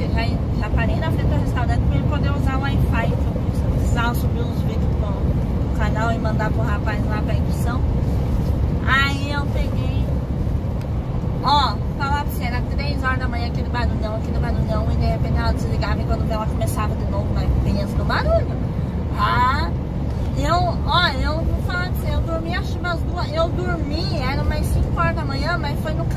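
Steady drone of a Scania 113 truck's diesel engine and road noise heard inside the cab while cruising on the highway, with a woman talking over it.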